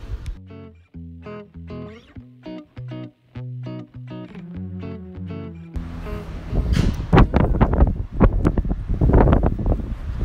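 Plucked guitar music, a short run of clean notes, for about the first six seconds. It then cuts abruptly to loud, rough outdoor background noise with a low rumble.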